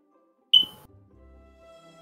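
A short, high beep about half a second in, fading quickly, over faint background music.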